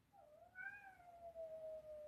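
A cat's single long, faint meow, rising briefly and then sliding slowly down in pitch over about two seconds.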